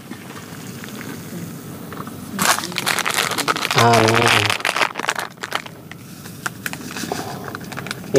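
Crinkling and crackling of something being handled, loudest from about two and a half to five seconds in, with a short vocal sound around four seconds and a few light clicks after.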